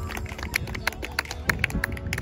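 Football kicks and running footsteps on artificial turf: a string of short, sharp knocks, the loudest about one and a half seconds in.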